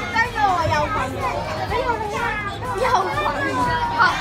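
Children's high-pitched voices talking and calling out over one another, with general chatter of people around them.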